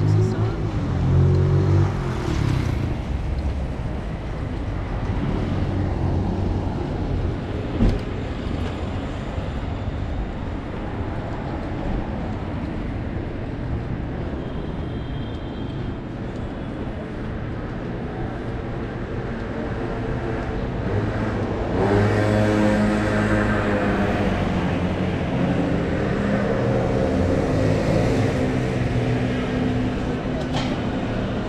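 City street traffic: a steady hum of car and van engines and tyres passing, growing louder in the last third. A single sharp knock about eight seconds in.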